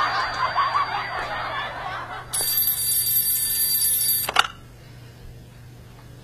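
Soft breathy giggling for about two seconds, then a steady high hiss that ends in a sharp click about four and a half seconds in, followed by quiet room tone.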